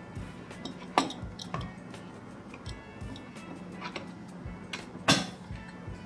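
Metal M.2 heatsink cover being fitted onto a motherboard and latched into its tool-less clip: light metallic clicks and clinks, with two sharp clacks, one about a second in and one near the end.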